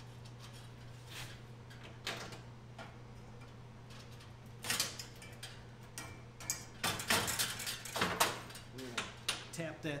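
MIG welder laying short tack welds on steel: a brief crackling burst about halfway through, then several more in quick succession, over a steady low shop hum.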